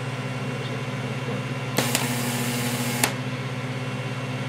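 A solid-state Tesla coil driven by a MOSFET bridge, discharging with a steady buzz in its power-arc mode. About two seconds in it jumps into corona mode for about a second, a loud hiss that starts and stops abruptly. That is the full-power mode, drawing over 7 amps, which heats the MOSFETs fast.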